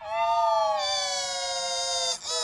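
A high, electronically pitch-shifted voice held on one long note for about two seconds, sliding slowly down in pitch before breaking off.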